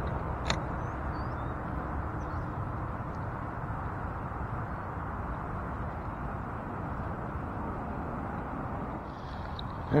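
Steady low rumble of wind on the microphone, with one sharp click about half a second in.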